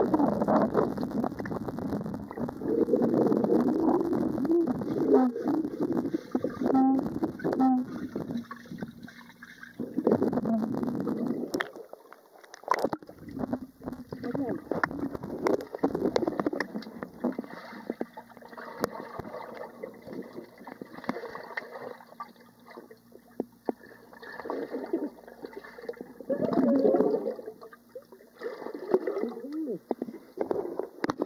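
Muffled underwater splashing and bubbling from swimmers moving through a swimming pool, heard through a waterproof camera's housing, swelling and fading in surges.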